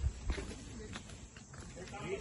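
Oxen shifting their hooves beside the cart, with two low thumps near the start and people talking faintly in the background.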